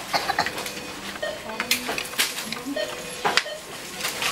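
Irregular clicks and knocks of empty plastic bottles being handled and pushed into the bottle slot of a Tomra reverse vending machine, over a faint steady hum, with short quiet voices now and then.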